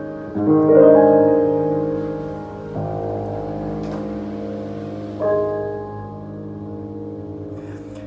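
Boston GP178 grand piano playing the closing chords of a piece: two chords close together near the start, another about three seconds in and a last one about five seconds in, left to ring and slowly fade. The ending includes a dissonant chord, a slip the player owns up to.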